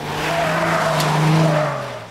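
A Chrysler Crossfire sports car passing at speed: a steady engine note with tyre and wind noise that swells to a peak about a second and a half in, then fades.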